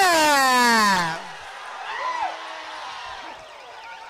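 A race commentator's long drawn-out call, his voice sliding down in pitch over the first second, then a low crowd murmur with a distant shout and a faint warbling tone near the end.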